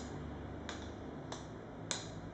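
Thin rods swinging from hanging rubber-bellowed units tick as they strike one another: three sharp clicks in two seconds, the last the loudest, over a low steady hum.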